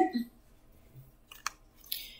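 Cards being gathered up by hand after spilling: a few faint, short clicks and light rustles.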